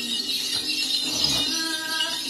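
Then ritual singing: a singer's sustained chanted voice over the steady jingling of a shaken bell rattle.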